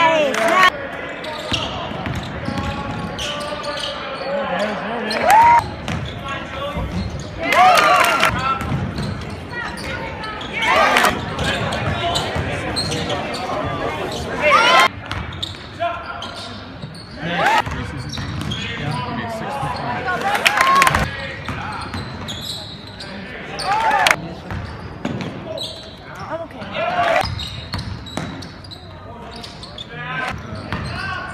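Live basketball game sound heard from the stands in a gym: a basketball bouncing on the hardwood court amid players' and spectators' voices and shouts, with several short loud bursts every few seconds.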